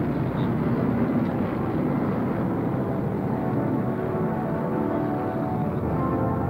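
Lockheed U-2 spy plane's single jet engine at takeoff power as the aircraft lifts off and climbs out, a steady, dense rushing noise that stays at an even loudness throughout.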